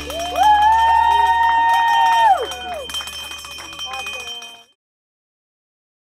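A small brass-belled horn sounding: its pitch slides up, holds steady for about two seconds, then slides back down, over a low steady hum. The sound cuts off abruptly near the end.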